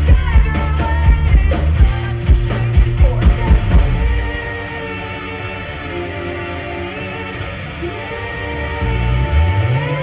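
A rock band playing live with a woman singing lead. Drums and bass drive the first few seconds, then drop out to a quieter stretch of held chords, and the full band swells back in near the end.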